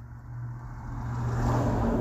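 A motor vehicle growing louder over about a second and a half, over a steady low hum.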